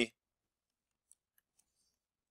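Near silence with a few faint, light ticks of a stylus writing on a tablet screen.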